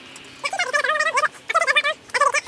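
An animal call: a fast run of short, pitched, rising-and-falling notes in two bursts, the first starting about half a second in.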